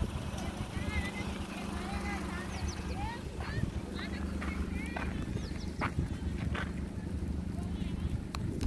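Small birds chirping in short, quick calls over a steady low hum, with a few sharp clicks about two-thirds of the way in.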